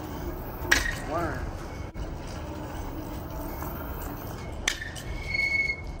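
Steady low outdoor rumble on a phone microphone, with a sharp knock about a second in and another near the end, and a brief distant voice-like call just after the first knock.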